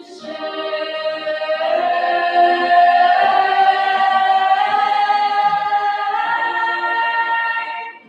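Mixed high school choir singing in full voice, holding a long sustained chord that swells louder over the first few seconds. The upper voices move up a step about six seconds in, and the chord is released together near the end.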